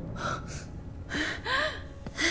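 A man gasping for breath in a few short, strained gasps; about a second in his voice catches in a rising-and-falling tone. He is winded after being knocked to the floor.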